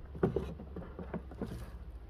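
Light hollow knocks and rattles from the Airhead composting toilet's plastic solids tank being handled and set down, several short taps over about a second and a half.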